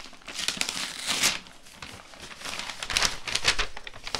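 Tissue paper crinkling and rustling as a sticker seal is peeled off and the wrapping is folded open by hand, in two bouts about two seconds apart.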